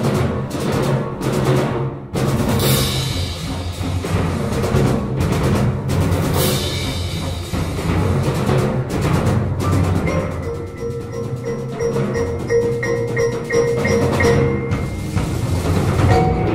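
Percussion orchestra playing: timpani and drums pounding under mallet keyboards, with several crash-cymbal strikes in the first half. From about ten seconds in, the texture thins to ringing keyboard-percussion notes repeated over the low drums.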